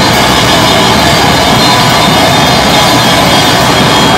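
Live hardcore band playing loud and without a break: electric guitar through a Marshall amp and a drum kit in a dense, heavy wall of sound.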